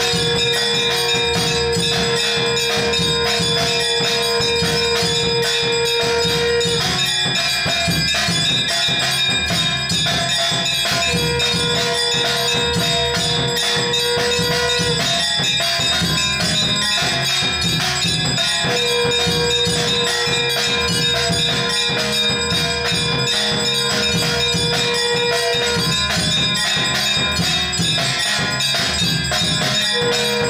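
Temple bells ringing fast and continuously with drumming and clashing percussion during a Hindu aarti. A long steady note is held three times over them, for about seven, four and seven seconds.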